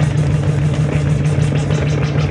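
Noise-rock drone from an electric guitar run through a floor rig of effects pedals: a loud, dense sustained wall of distorted noise over a steady low hum, with a fast flutter in the upper range.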